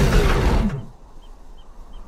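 A car engine running loudly and winding down in pitch, then cutting out sharply under a second in as the smoking car breaks down. What follows is a quiet stretch with a few faint, high ticks.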